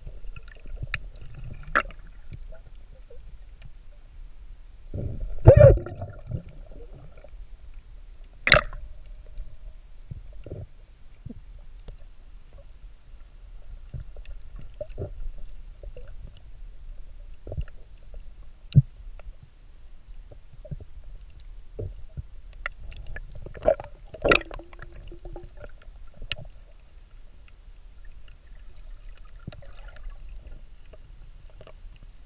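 Underwater sound picked up by an action camera held below the surface: a steady, muffled low rumble with scattered sharp clicks and ticks, and a louder muffled thump about five seconds in.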